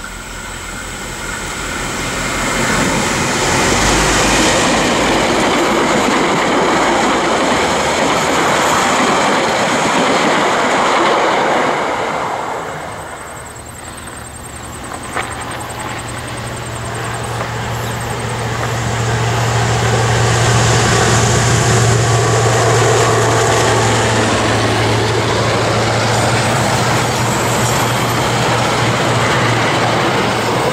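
DBR-class V8 diesel locomotive hauling a passenger train, loud engine and rail rumble building as it approaches. After a dip about 13 seconds in, the train is heard again with a steady low engine hum that grows louder and holds.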